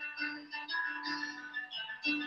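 Piano played softly, a low note held under a few changing higher notes in a short jazz phrase.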